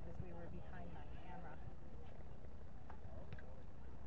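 Indistinct voices of people talking at a distance, over a steady low rumble, with a few faint clicks near the end.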